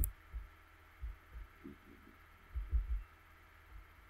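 A single sharp mouse click, then a handful of dull, very low thumps at irregular spacing, a close group of them a little before the end, as a computer mouse and keyboard are worked on a desk.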